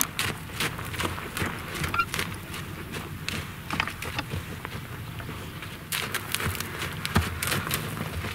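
A horse moving about on the ground, its hoofbeats and the handler's footsteps making irregular knocks and scuffs over a low steady hum.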